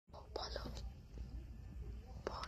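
Faint whispering close to the microphone, a few short hissy syllables in the first second, over a steady low rumble of room noise.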